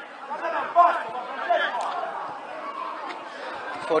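Chatter of several overlapping voices talking and calling out at once, with one brief louder moment just under a second in.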